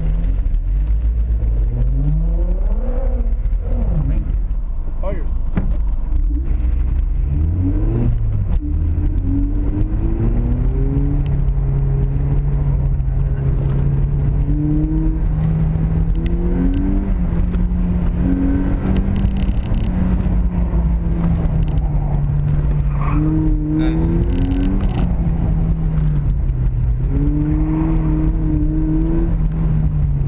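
2010 Mazda Miata's 2.0-litre four-cylinder engine heard from inside the cabin on an autocross run: it revs up hard off the start, drops back, climbs again, then rises and falls with the throttle through the course.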